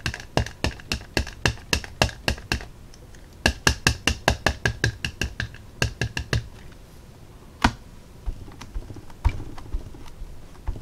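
Rapid light tapping on the craft table, about four to five taps a second in two runs, then a few separate louder knocks near the end.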